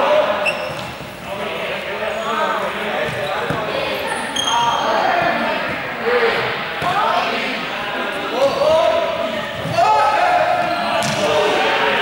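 Several young people's voices calling and shouting during a ball game, with a few ball thuds against the wall and floor, echoing in a large sports hall.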